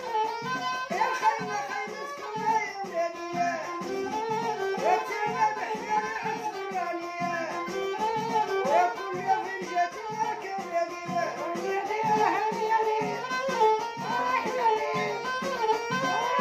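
Violin held upright and bowed, playing a melody full of slides and ornaments over a steady percussion beat.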